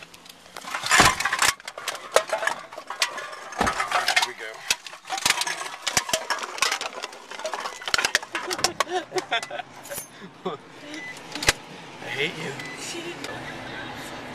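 Handling noise from a camcorder being moved about inside a car: a run of knocks, clicks and rustles on the microphone.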